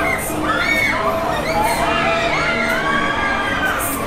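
A crowd of riders on a Top Star Tour thrill ride screaming and yelling together, many overlapping shrieks rising and falling in pitch.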